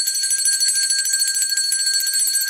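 A high-pitched, shimmering chime-like sound effect: several steady high tones with a fast flutter, held without a break and accompanying a subscribe-button animation.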